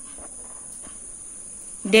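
A steady high-pitched drone with a few faint clicks; a voice starts near the end.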